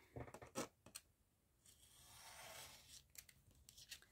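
Craft knife slicing through a collaged paper board along a steel ruler: a faint scraping stroke lasting about a second and a half in the middle, with light clicks of the blade and ruler before and after.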